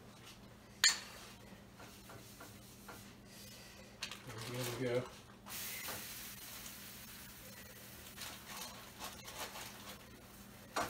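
A flour tortilla frying in an oiled pan on a gas stove: a sharp knock of pan or utensil about a second in, then a steady sizzle from about halfway through.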